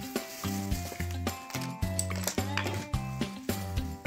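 Background music with a steady, repeating bass beat. In the first second or so it plays over the crinkling rustle of a thin plastic bag being handled.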